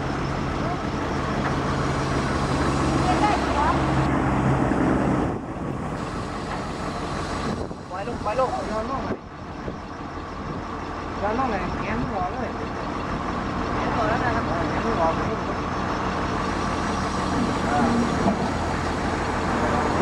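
A Kobelco excavator's diesel engine running steadily, loudest in about the first five seconds, then quieter and less even.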